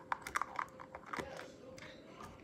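Blue plastic screw cap being twisted on a plastic sports-drink bottle, giving a string of short, irregular clicks and crackles from the cap and the thin bottle plastic.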